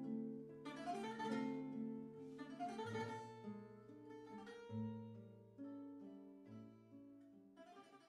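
Soundtrack music on guitar: held plucked notes with a few strummed chords, growing gradually quieter.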